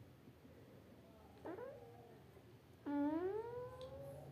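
A cat meowing twice: a short call about a second and a half in, then a longer meow that rises in pitch about three seconds in.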